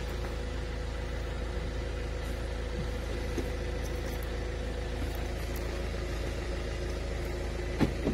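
Kia Carnival minivan idling steadily, heard from beside the driver's door. Near the end come two quick clicks as the door locks release.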